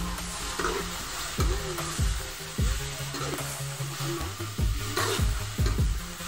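Chicken pieces and tomatoes sizzling in oil as they are stirred and sautéed in a pan with a metal utensil. Background music plays under it.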